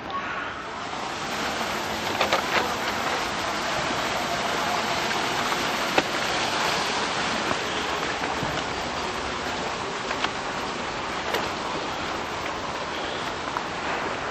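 Steady rushing of water, like a small cascade into a pond, with a few short clicks and knocks over it.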